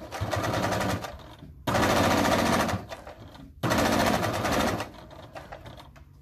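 Electric domestic sewing machine stitching through fabric and zipper tape in three short runs of about a second each, with brief pauses between them.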